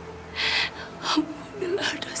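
A woman crying: a sharp gasping breath about half a second in, then broken sobs and whimpers.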